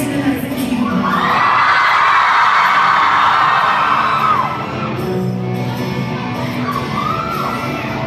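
Live rock band playing in a large hall with the crowd singing and shouting along; the crowd's voices swell loudest from about a second in until about four and a half seconds.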